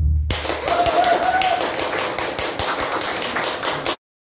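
A small audience clapping in a room, a dense irregular patter of hand claps that starts just after the music stops. A voice calls out briefly about a second in, and the clapping cuts off abruptly near the end.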